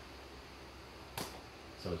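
A single short, sharp click a little over a second in, like a tool touching down on the vinyl planks, then a man starts to speak right at the end.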